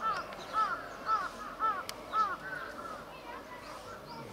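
Cheetahs chirping: a run of short, high, bird-like arched chirps about twice a second, fading after a couple of seconds.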